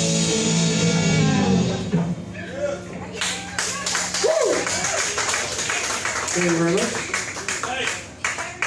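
A live band's song ends with a last chord ringing out for a few seconds, then the audience applauds, with a few whooping cheers through the clapping.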